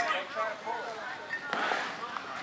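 Voices talking in the background, with a sharp crack of a bat hitting a baseball about a second and a half in.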